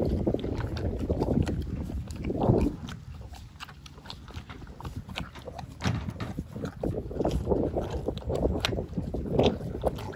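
A pony licking out a small treat tub, with a string of wet clicks and smacks of tongue and lips against the tub, and a louder bout about two and a half seconds in. Wind rumbles on the microphone underneath.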